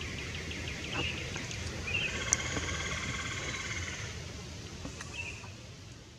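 Songbirds singing in woodland: a run of short repeated notes, then a longer passage of rapidly repeated notes, over a steady low rumble of outdoor noise, with one sharp click about two and a half seconds in.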